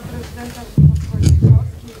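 Faint speech, then about a second of loud, low rumbling and rustling from a handheld microphone being handled as it is carried over.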